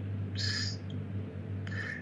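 A pause in a recorded conversation: a steady low hum underneath, with a short breathy sound about half a second in.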